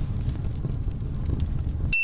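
A sheet of paper burning: a steady low rumble with faint crackles that cuts off suddenly near the end, where a brief high tone sounds.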